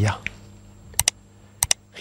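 Two computer-mouse click sound effects, each a quick double click: one about a second in and one about two-thirds of a second later.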